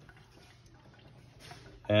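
Near silence: faint kitchen room tone, then a man starts speaking near the end.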